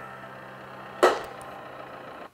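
A faint steady low hum, with one sharp knock about a second in that dies away quickly.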